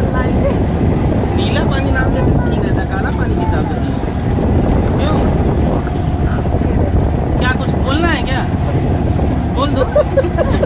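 Motorboat engine running steadily, with wind buffeting the microphone. Faint voices come through now and then.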